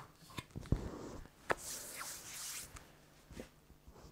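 Hands handling RC truck parts on a workbench: a few soft knocks and clicks in the first second and a half, then a brief rustle, with faint ticks near the end.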